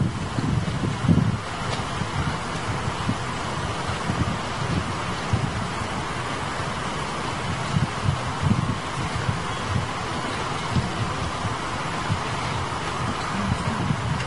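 Camcorder microphone noise: a steady hiss with irregular low rumbling bumps, like wind or handling on the microphone.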